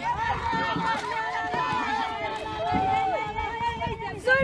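Several voices of soccer players and onlookers calling and shouting across the pitch, over a steady held tone.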